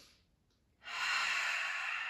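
A woman breathing audibly while holding a yoga chair pose: a faint breath fading out at the start, then a long, louder breath beginning about a second in.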